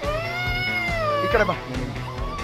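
A person's long, high-pitched squeal, held for about a second and a half with a slight rise, then dropping away, over background music.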